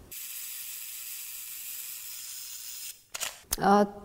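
Camera sound effect: a steady hiss for about three seconds that cuts off sharply, then a few sharp camera-shutter clicks, with a voice starting just before the end.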